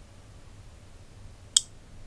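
A single sharp click about one and a half seconds in, over quiet room noise: the relay of a 4-channel Wi-Fi relay module clicking closed as its channel two switches on.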